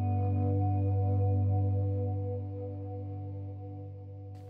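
Electric guitar volume swells through an RV6 reverb pedal and a Strymon BigSky reverb: a held chord swells in, rings as a wide, washed-out reverb pad and slowly fades.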